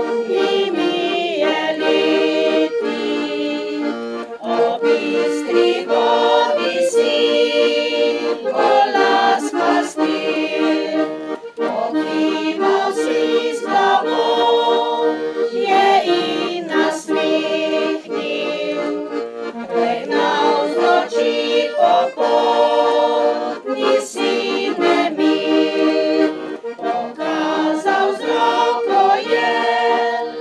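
Piano accordion playing a traditional folk tune in a steady rhythm, accompanying a women's choir singing.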